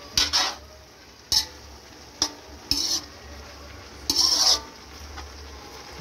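A metal spoon scraping and clanking against an aluminium wok as sliced jackfruit and dried fish are stirred: about five separate strokes, the longest and loudest near the end. A low sizzle of sautéing runs underneath.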